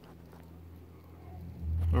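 A low, steady engine hum that grows louder about one and a half seconds in.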